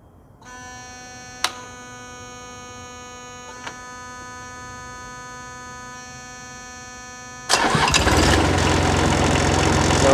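Thermo King MD-100 reefer unit's pre-start warning buzzer sounding a steady tone for about seven seconds, with two short clicks during it. The buzzer warns that the engine is about to start. Then the unit's diesel engine cranks and starts suddenly and much louder, and keeps running.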